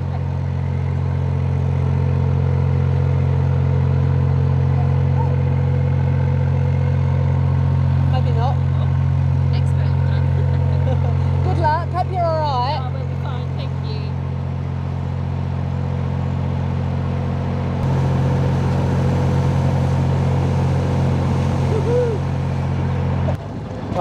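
Narrowboat diesel engine running hard under power, a steady low drone, as the boat pushes to get free of a silted canal bed. The engine note eases about halfway through and picks up again a few seconds before the end.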